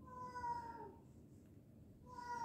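A pet cat meowing once, a faint, drawn-out call of almost a second that falls slightly in pitch, begging for fish.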